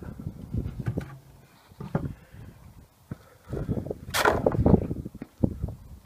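Scattered knocks and handling sounds, with one loud, hissy burst about four seconds in.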